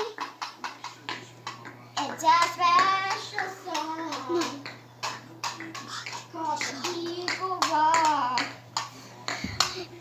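A young child's voice in long, wavering, sing-song tones, without clear words, with many sharp taps and clicks throughout, over a steady low hum.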